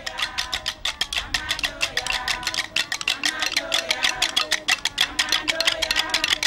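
A group of women singing a doleful, repetitive chant, with a fast, steady clacking of hand-held wooden sticks struck together as percussion.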